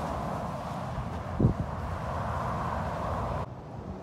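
Steady rush of Interstate 4 traffic passing by on the highway, with a brief low thump about a second and a half in. The noise drops off sharply near the end.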